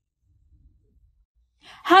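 Near silence, then a short breath just before a woman starts speaking at the very end.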